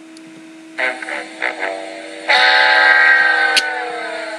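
A "sad trombone" gag: three short brass-like notes, then a long note sliding slowly down in pitch and fading out, the wah-wah-wah-waaah that mocks a failure. A steady low electrical hum runs underneath.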